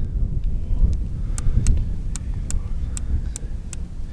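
Crossbow scope's windage turret being turned by hand, giving a series of light detent clicks, about three a second, one click per adjustment step while the scope is sighted in.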